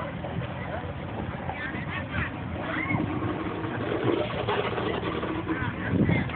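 Distant voices of people and children talking and calling, over a steady low rumble.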